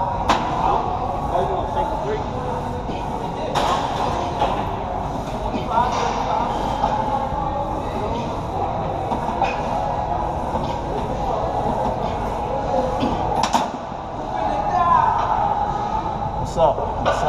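Gym ambience: indistinct voices in a large room with a few sharp clanks of weight equipment, one near the start, one a few seconds in and one near the end.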